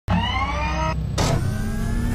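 Intro sound effect: a motor-like whirr rising in pitch for about a second over a low rumble, cutting off abruptly, then a short whoosh and a fainter rising tone.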